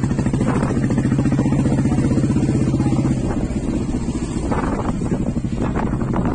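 Motorcycle engine running steadily while riding, its note easing a little about halfway through.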